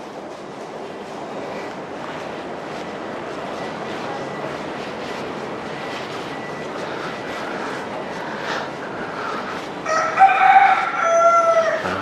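Steady background noise, then about ten seconds in a rooster crows once: a loud call in two parts, the second part a little lower in pitch.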